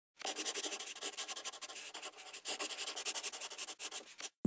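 An 8B graphite pencil scratching across paper in many rapid, short drawing strokes.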